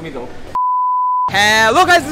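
Test-tone beep of a TV colour-bar test pattern: one pure, steady tone at about 1 kHz lasting under a second, starting and cutting off abruptly, followed by a man's voice.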